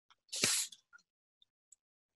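A single short, breathy puff of air from a person, about half a second in, followed by a couple of faint ticks.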